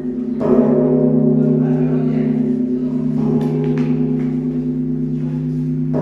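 Large hanging bell in the Drum Tower, struck about half a second in. It rings on with a low, steady, many-toned hum that carries over from the stroke before.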